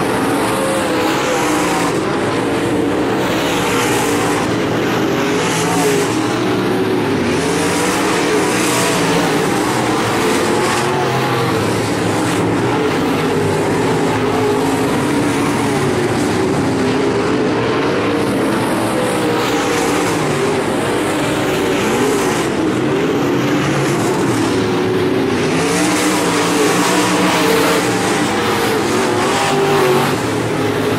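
Dirt-track modified race cars' V8 engines running at racing speed around the oval, several engine notes overlapping and rising and falling as the cars circle the track.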